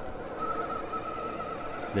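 An RC rock crawler's electric motor and drivetrain whining steadily at low throttle as it crawls slowly up a rock, the pitch wavering slightly.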